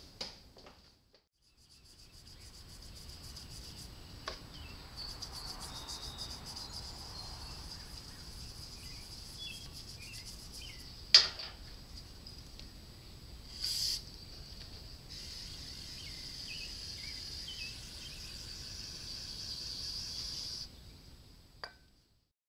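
Outdoor ambience of crickets chirring steadily in a high band, with a few faint bird chirps. A single sharp click comes about halfway through and a short hiss a couple of seconds later.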